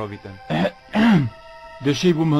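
A man's voice in dubbed dialogue: a short utterance, then a falling vocal exclamation about a second in, over a quiet, sustained background music score.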